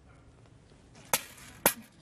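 Two sharp blows about half a second apart, after a near-silent first second: a sword striking a steel helmet worn by a reenactor in a test of medieval armour.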